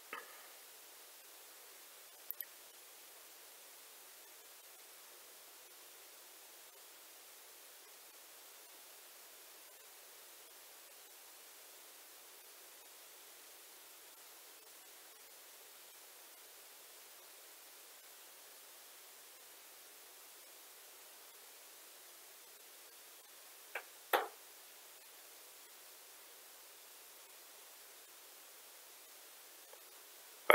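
Near silence: a faint steady hiss of room tone, broken by a few brief clicks, a double click about two seconds in and a louder pair about 24 seconds in.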